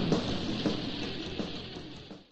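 Death metal band recording from a 1991 cassette demo, dense and distorted, fading out steadily to the end.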